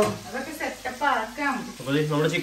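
Food sizzling as it fries in hot oil in a pan, under a voice talking.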